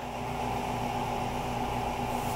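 Steady hum of a running machine, with a few constant tones in it and no change or beats.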